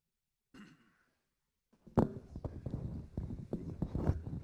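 A man's breath and sigh close on a podium microphone, with a sharp bump about two seconds in and then a run of small knocks and rustles from the microphone and lectern being handled.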